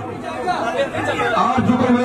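Speech only: a man's voice with crowd chatter, the voice growing louder about halfway through.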